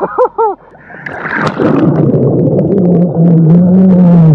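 A short laugh, then a diver screaming underwater: a muffled, wavering voice through water and bubbling, swelling into a long held scream near the end.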